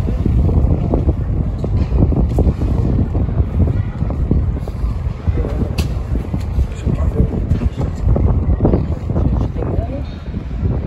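Wind buffeting the microphone, a loud irregular low rumble with gusty crackles.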